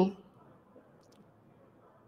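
The last syllable of a woman's speech fades out, then near silence: room tone with two or three faint, sharp clicks about a second in.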